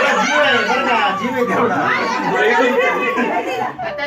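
Several people talking over one another, a lively mix of voices chattering at once.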